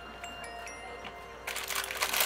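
A few faint, high ringing ticks, then plastic packaging crinkling as it is handled from about a second and a half in.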